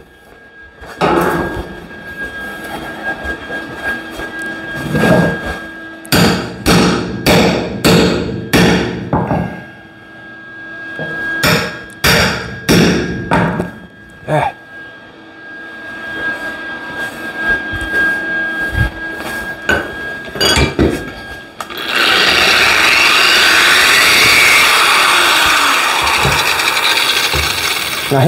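Hammer blows on 3/4-inch square tubing being hammer-formed over a wooden stump: irregular sharp strikes, coming in quick clusters through the first half. About 22 seconds in, an angle grinder starts and runs steadily on the metal.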